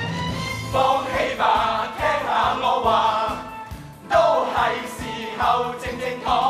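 A musical number: a chorus of voices singing together over instrumental backing with a steady beat.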